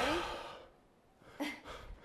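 A person's breathy sigh as they exhale, out of breath at the end of a hard workout, followed about a second later by a shorter, fainter breath.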